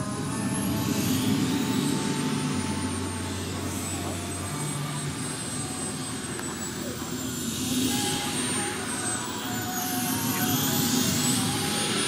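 Kerosene model jet turbine running at taxi power: a thin, high whine that slowly wavers up and down in pitch over a steady rushing hiss.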